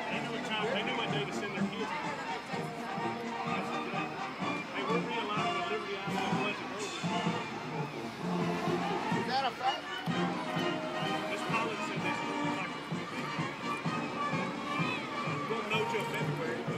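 Marching band playing on the field, heard from the stands, with spectators talking close by.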